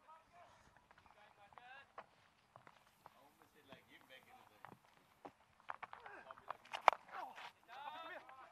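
Faint voices of cricketers calling on the field, then a single sharp crack of a cricket bat hitting the ball about seven seconds in, with calls around it.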